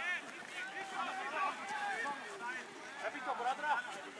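Faint, indistinct voices of several players calling out across a rugby pitch during a training drill, with no single clear speaker.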